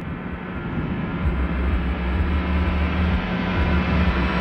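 A deep, steady rumbling drone with a sustained low tone, slowly swelling in level: a cinematic sound-design swell that builds toward the song's entry.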